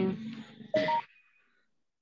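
A person's voice over a video-call line in two short snatches, the second a brief held syllable just before the one-second mark, followed by silence.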